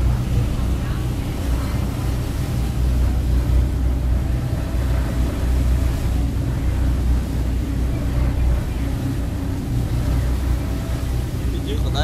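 A car ferry's engine running with a steady low drone under a haze of water and wind noise.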